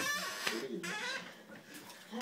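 A woman's voice and laughter, louder in the first second and then quieter.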